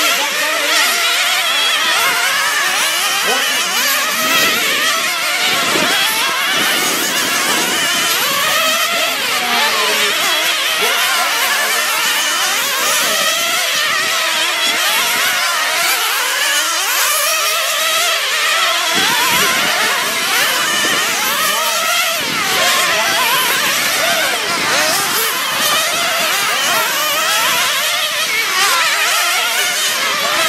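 A pack of nitro-powered RC sprint cars racing on an oval, their small two-stroke glow engines running at a high pitch. Several engines overlap, each whine rising and falling as the cars speed up and back off around the track.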